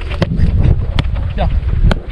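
Wind rumbling on the microphone, with three sharp knocks of a football being struck during quick one-touch passes on artificial turf.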